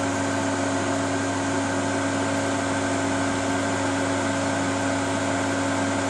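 Cooling fans of bench power electronics (an electronic load and a switch-mode power supply under test) running steadily: an even whirr with several constant tones.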